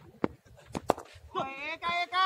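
Sharp knocks as a cricket ball is delivered and played, the loudest just under a second in. A loud voice calls out from about a second and a half in.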